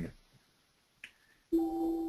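A single short click, then a steady held tone for about a second.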